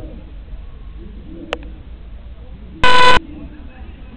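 A single short, very loud beep of a low, buzzy horn-like pitch, lasting about a third of a second, nearly three seconds in. Faint distant voices and a sharp click come before it.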